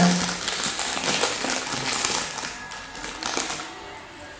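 Plastic packaging crinkling and rustling as small plastic pieces are handled and pulled out of a pouch, dying away about halfway through.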